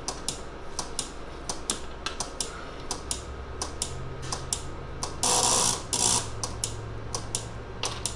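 Irregular clicking of keys being pressed on a breadboarded DSKY-replica keypad, a few clicks a second. Two short, louder bursts of noise come just after five and six seconds in, and a faint steady hum comes in about halfway.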